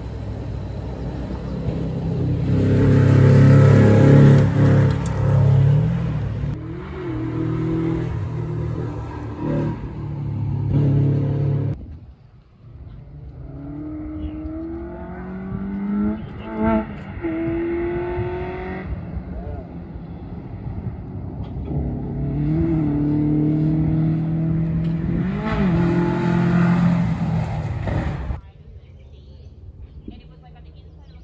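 Rally cars at full throttle on a gravel stage, engines revving and climbing in pitch through the gears as they come past, in three separate runs. The loudest is about four seconds in; the sound cuts off suddenly near the middle and again near the end.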